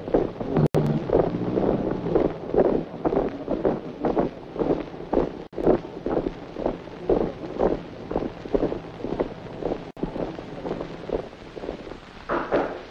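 Boots of a squad of marching policemen striking hard ground in step, about two footfalls a second, with a couple of abrupt cuts in the sound.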